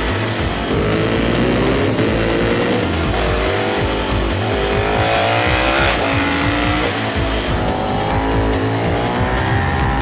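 KTM 1290 Super Duke's big V-twin engine revving hard under acceleration, its pitch rising and falling several times as the bike is ridden hard, with music playing underneath.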